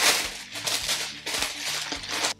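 Thin white packing wrap rustling and crinkling as it is unfolded by hand from around a new plastic organiser, in a run of uneven swishes, loudest at the start.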